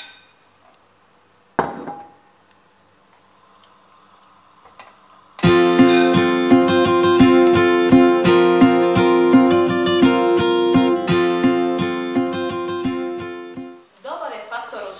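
Acoustic guitar music, plucked and strummed, cuts in suddenly about five seconds in and runs until just before the end. Before it, there is one short sharp clatter about a second and a half in, then near quiet.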